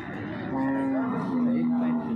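One long moo from cattle. It starts about half a second in and holds a steady pitch that steps down slightly partway through.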